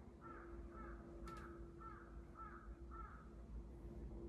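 A bird calling faintly six times in an even series, about half a second apart.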